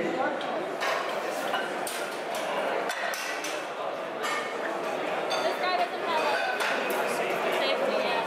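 Crowd chatter in a large hall, with repeated sharp metallic clinks of a loaded barbell and steel weight plates.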